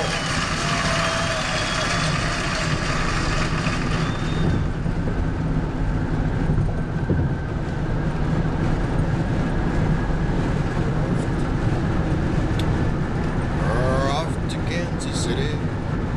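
Steady low road and engine noise inside a car's cabin while it cruises at highway speed, with a brighter hiss for the first few seconds that then drops away.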